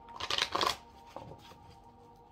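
A deck of oracle cards riffle-shuffled by hand: a quick burst of card edges flicking together in the first second, then a single light tap as the deck settles.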